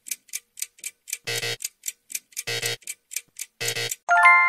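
Ticking-clock quiz countdown effect counting off the time to answer: quick even ticks about four a second, with a louder pitched tock about every second and a quarter.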